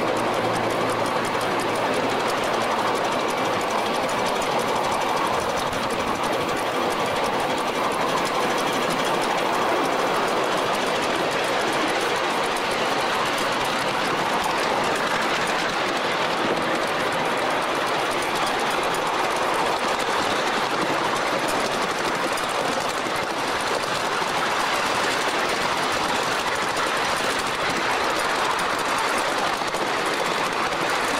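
Small-gauge railway train running along the track: a steady, rapid clatter from the locomotive and its wheels on the rails, heard from aboard.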